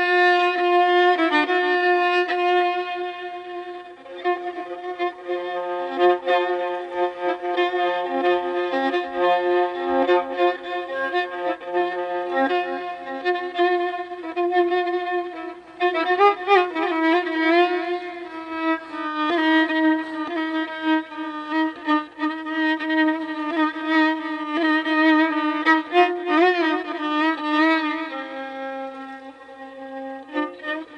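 A violin plays Persian classical music in Avaz-e Afshari. Long held notes give way to wavering, ornamented passages with vibrato, about halfway through and again near the end.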